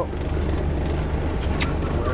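Escort boat's engine running steadily, a low hum under a broad rush of wind and water.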